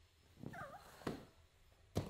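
A child's brief whining vocal sound, followed by a couple of soft thumps of bare feet on rubber gym flooring.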